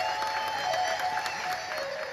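Audience applause, many scattered claps, over a harmonium's faint held notes, slowly dying away as the tabla solo ends.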